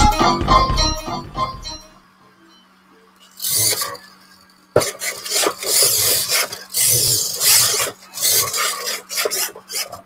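Intro music fades out in the first two seconds. Then a 3D-printed TE-DO droid moves under radio control, its servos and drive making a rasping, grinding noise in short bursts, with a sharp click just before five seconds in.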